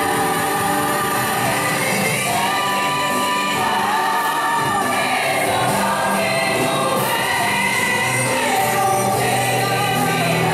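Music with a choir singing, sustained and continuous.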